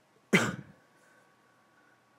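A man's single short, sharp cough.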